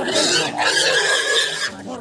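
Pig squealing loudly as it is held down, one harsh, high-pitched squeal lasting about a second and a half and cutting off shortly before the end.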